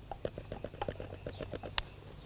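Metal spoon tapping and scraping against the sides of a plastic tub while stirring a runny hydrated-lime and water paint: a quick, uneven run of light taps, with one sharper click near the end.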